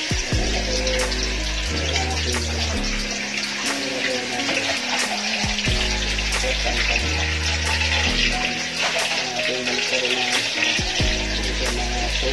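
Eggplant omelette frying in hot oil in a pan, a steady sizzle, under background music with a bass line that changes note every second or two.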